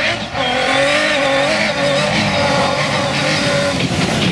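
Rally car engine running hard at a fairly steady high pitch with small wavers as the car comes up the gravel stage and passes close by.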